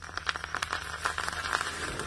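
A small pile of powder on the ground burning after being lit, crackling and fizzing in a rapid, irregular string of sharp crackles.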